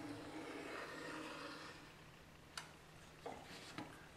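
Faint scratch of a very sharp pencil drawing a very light line on plywood along a combination square's steel blade, stopping a little under two seconds in. A few light clicks follow as the square is handled.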